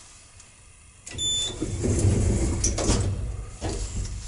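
Automatic sliding doors of a small passenger lift closing: a short high beep about a second in, then the door operator and panels running shut with a low rumble and a few knocks as they close.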